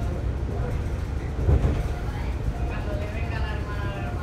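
Steady low rumble of a Cercanías Madrid commuter train carriage running along the track, heard from inside the carriage, with a brief louder thump about one and a half seconds in. People talk in the background.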